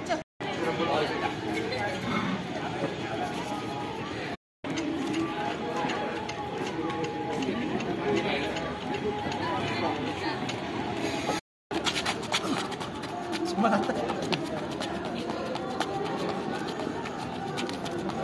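Indistinct voices of several people talking and calling out, broken by three short dead-silent gaps where the footage is cut. Scattered light taps and clicks run through the last few seconds.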